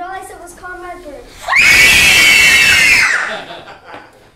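Children on stage scream together in a loud, high-pitched shriek lasting about a second and a half, starting about a second and a half in. Brief children's talk comes before it.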